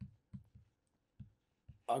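Faint, irregular taps of a pen tip on a writing surface as a line of handwriting is written, about five short taps over two seconds.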